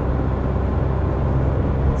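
Inside the cab of a Fiat Ducato Series 8 van on the move in fourth gear: a steady low rumble from its 2.3-litre four-cylinder Multijet turbodiesel, mixed with an even hiss of tyre and wind noise.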